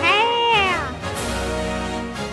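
A drawn-out meow, held for about a second and falling in pitch at the end, over magical-girl transformation music.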